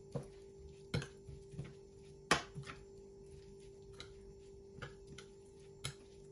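Metal spoon stirring a wet rice-and-herb stuffing in a bowl, with irregular clinks and scrapes of the spoon against the bowl, the loudest a little past two seconds in. A faint steady hum lies underneath.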